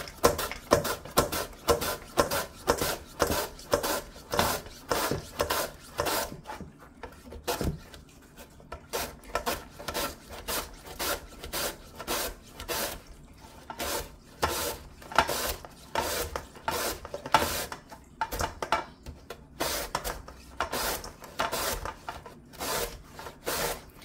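Korean radish being julienned on a hand mandoline slicer: steady rasping strokes, about two or three a second, as the radish is pushed across the blade, with a couple of brief pauses.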